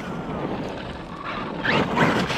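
Traxxas Maxx RC monster truck driving through slush and water: its electric motor whines over the wash of its tyres, with a short rising whine near the end as it speeds up. Wind buffets the microphone.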